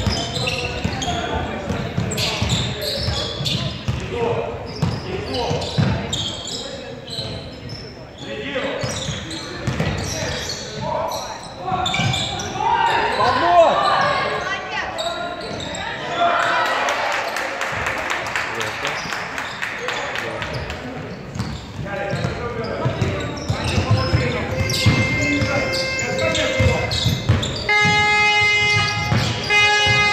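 Basketball game in a large gym: a ball bouncing on the hardwood court amid players' and spectators' voices echoing in the hall, with a few high-pitched squeaks near the end.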